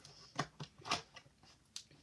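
Scissors snipping through the tape sealing a small cardboard box: several short, sharp cuts.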